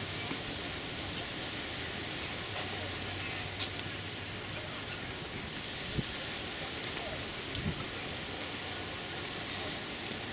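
Steady, even hiss of outdoor background noise, with a few faint sharp clicks about a third of the way in and again past the middle.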